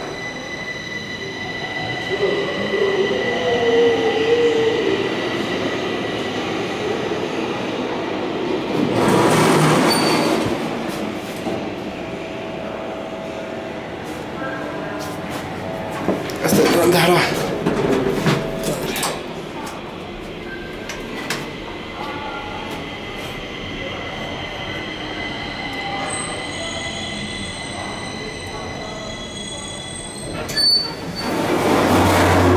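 Worn Thyssen inclined elevator car travelling along its sloping track, with a steady high whine and louder rattling, clattering stretches about a third and again just over halfway through. The elevator is in very bad shape.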